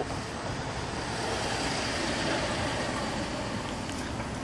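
Road traffic on a city street: a steady noise of passing vehicles that swells a little about halfway through and then eases off.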